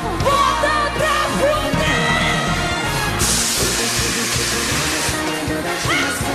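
Live pop band music with a steady heavy bass and a female lead voice singing and shouting over it in the first half. About halfway through, a bright hissing wash comes in over the band.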